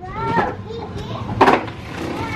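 A baby girl making short, high-pitched wordless sounds while playing, with a sudden loud burst about one and a half seconds in.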